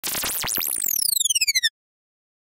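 Short synthesized intro sting: electronic tones with several falling pitch sweeps that break into a fast stutter in the second half, then cut off suddenly.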